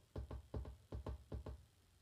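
A quick run of soft, fairly even knocks on a hard surface, about five a second.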